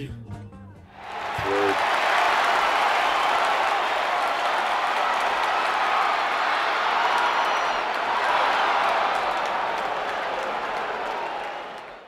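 Crowd cheering and applauding, swelling in about a second in, holding steadily, then fading out at the end.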